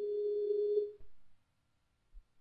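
Telephone ringback tone on an outgoing call: one steady, low-pitched ring lasting about a second, then it stops.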